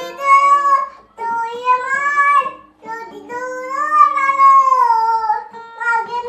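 A young girl singing a song in three phrases, the last a long held note that rises and then falls, with a few plucked notes from a small toy guitar beneath.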